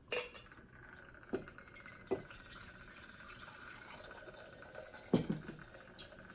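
Whiskey poured in a thin steady stream through a bottle's pour spout into a metal cocktail shaker, with a few light knocks of bottle and shaker.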